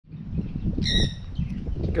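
A pet parrot in the aviary gives one short, clear call about a second in, with a fainter call just after, over a low steady rumble.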